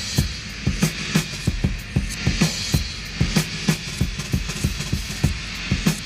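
Music: a steady drum beat, about three hits a second, over a low hum and hiss.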